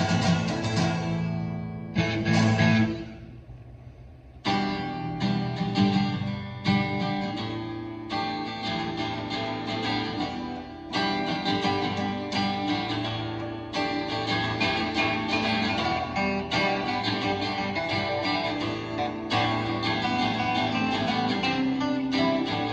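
Three acoustic guitars strummed together in an instrumental passage with no singing. About three seconds in the playing thins out to a brief lull, and at about four and a half seconds the full strumming comes back in and goes on steadily.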